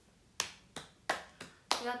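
One person clapping her hands, about five quick claps at roughly three a second.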